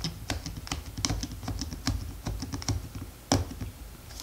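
Quick, irregular small clicks and taps of plastic and metal as a flash unit is screwed onto the end of a Lomomatic 110 film camera, with one sharper click about three seconds in.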